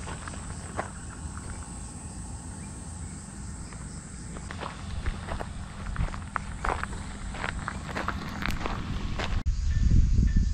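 Footsteps of a person walking outdoors over a steady low rumble, the steps sounding more clearly from about halfway through. A faint steady high-pitched buzz sits under them until near the end.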